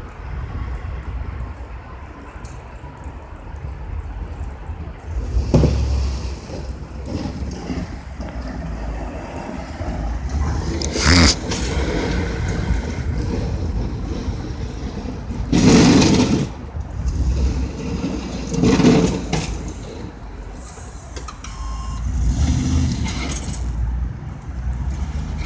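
Pickup truck with a front snow plow blade working through snow: a steady low engine rumble, with a few louder rushes of scraping noise, each about a second long.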